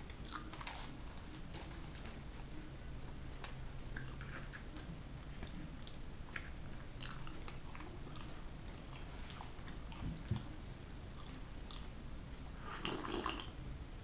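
Close-up chewing of flaky puff pastry with raspberry jam: a bite, then soft crackles and wet mouth clicks as it is chewed. A short, louder, noisier sound comes about thirteen seconds in.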